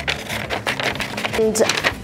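A sheet of printed paper rustling and crinkling as it is handled, with faint short scratchy sounds, for about the first second.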